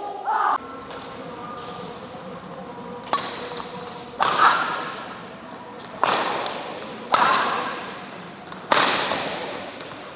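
Badminton rackets striking a shuttlecock in a rally: five sharp hits about one to one and a half seconds apart, each ringing on briefly in the large hall.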